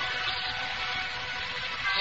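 Steady hiss with a few faint held tones underneath, the background of an old restored radio broadcast between lines of narration.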